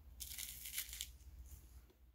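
A faint, crackly bite into a flaky, sugar-crusted croissant-style pastry: a short crunch of the crust starting about a quarter second in and lasting under a second, then fading as it is chewed.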